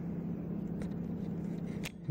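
Homemade Newton's cradle swinging, its balls clicking against each other: a faint click a little under a second in and a sharper one near the end, over a steady low hum.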